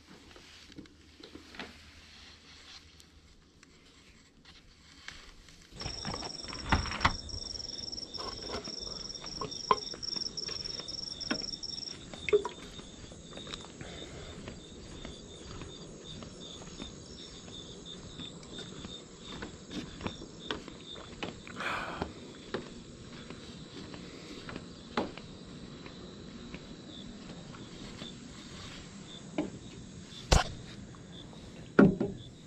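Night insects chirring steadily outdoors in several high, thin tones, starting about six seconds in after a quieter stretch. Scattered knocks and footsteps on a wooden deck come over them.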